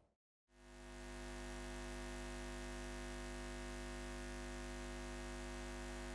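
A steady electronic drone fades in about half a second in and holds: a strong low hum with many steady tones stacked above it.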